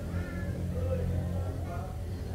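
Steady low hum of a diesel passenger train idling at the platform, with a few brief wavering higher calls over it.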